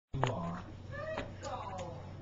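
A cat meowing twice, about a second in, the second call falling in pitch.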